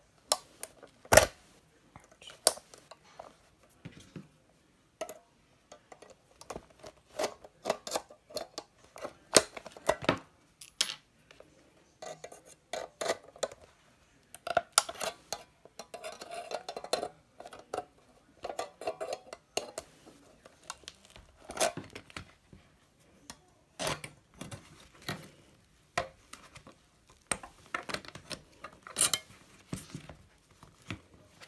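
Steel needle-nose pliers clinking and scraping against a metal binder ring mechanism as it is pried apart: a long run of irregular sharp clicks and knocks, with stretches of scraping in the middle.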